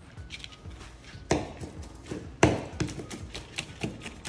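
Chef's knife chopping cooked bacon on a plastic cutting board. Two loud chops, then a quicker run of lighter chops near the end.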